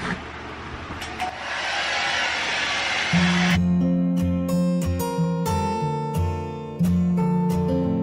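A steady hiss, louder from about a second and a half in, cut off abruptly a few seconds in by background music of strummed acoustic guitar, which carries on.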